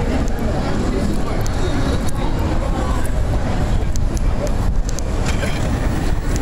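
Wheelchair rolling fast down a paved street: a steady, loud rolling noise heaviest in the low end, with small scattered clicks and rattles.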